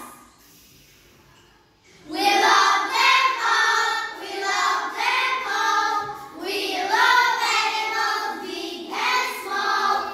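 A group of young children singing a song together. The singing breaks off at the start and comes back in after about two seconds, then runs on in phrases with short breaks.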